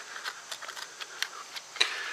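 Light, irregular clicks and scrapes of a steel knife point being twisted into a wooden bow-drill fireboard, cutting a starter divot to seat the spindle.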